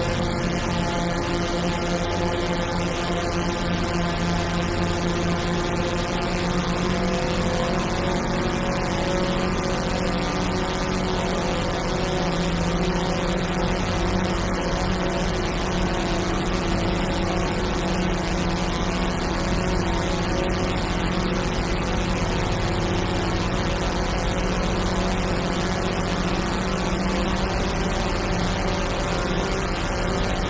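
Madwewe Minidrone, a handmade six-oscillator drone synthesizer with its oscillators in low, mid and high pairs, sounding a dense, steady drone of many held tones as its knobs are turned slowly. The low tones shift about twelve seconds in.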